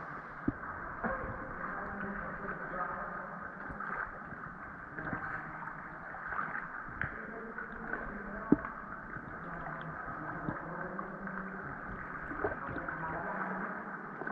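Water sloshing and gurgling steadily around swimmers floating down an underground cave river, with a few small sharp knocks.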